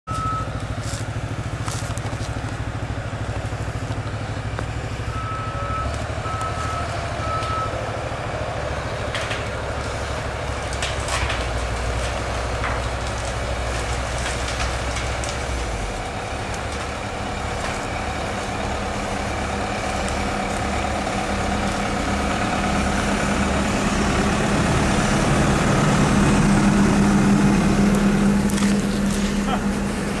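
Caterpillar tracked excavator's diesel engine running, growing louder and heavier in the last few seconds, with a few short high beeps about five seconds in.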